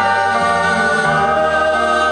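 Live band music: a slow passage of long held chords over electric guitar and bass.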